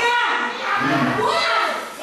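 Speech only: a preacher's voice in a large room, words not made out.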